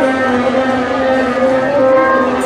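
Concert wind band of clarinets, flutes and tubas playing long held notes.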